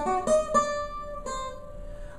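Custom OME tenor banjo with a 12-inch head: four chords strummed in the first second and a half, the last left ringing and fading.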